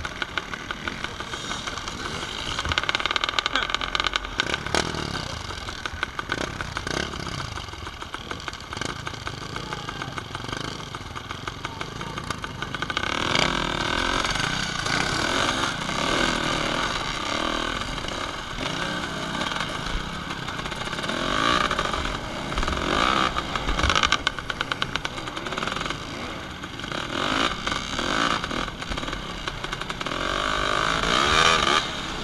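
Dirt bike engine running and revving up and down, with water splashing, as the bike rides through a shallow, rocky river; the engine gets louder about halfway through.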